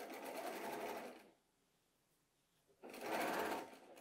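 Electric sewing machine stitching a seam through pieced cotton quilt fabric: a steady run that stops about a second in, then a second short burst of stitching near the end.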